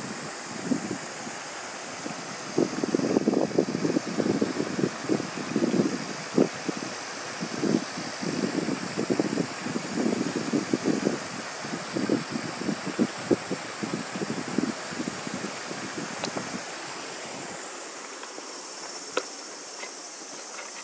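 Wind buffeting the microphone in irregular gusts, which die away near the end, over a steady high-pitched insect chorus.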